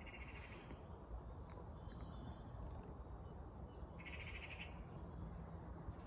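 Faint bird calls: a short buzzy call at the start and another about four seconds in, with a few thin high chirps between, over a low steady hum.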